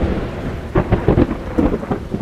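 Thunderstorm: heavy rain with thunder rumbling and surging.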